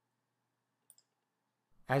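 A single computer mouse click, a quick tick-tick of button press and release, against near silence.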